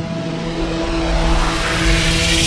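Logo-sting sound effect: a steady low drone under a rising rush of noise that swells louder and brighter.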